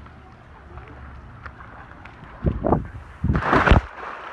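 A swimming pool splash as someone jumps in, about three seconds in: a short loud burst, then a louder rush of splashing water.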